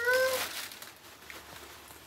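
One short, high-pitched vocal sound at the very start, about half a second long, rising and then falling in pitch.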